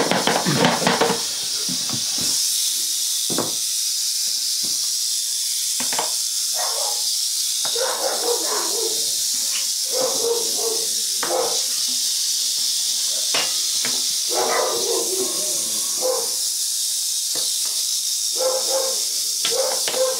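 Rattlesnake rattling without a break, a steady high-pitched buzz, the defensive warning of a snake being handled.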